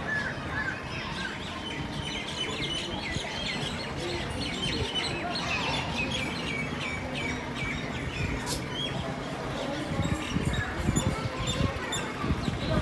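Birds chirping: a fast run of short, repeated high chirps for several seconds, fading after the middle, with low rumbling noise in the last couple of seconds.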